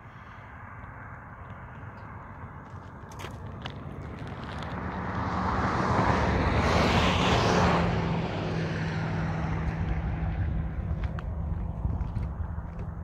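A car passing on the highway: tyre and engine noise swells to a peak about seven seconds in and then fades, with a low engine hum under it.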